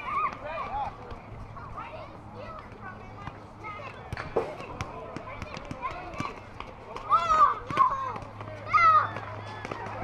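Young ballplayers and spectators calling out and chattering, unintelligible, with louder high-pitched shouts about seven and nine seconds in.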